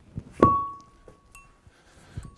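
Heavy metal roller cylinder set down with a single thunk, then ringing briefly with one clear tone that fades within about half a second. A few faint knocks follow.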